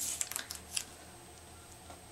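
Paper handling: a brief rustle as a cardstock strip is moved and pressed down, with a few light ticks in the first second, then only faint room noise.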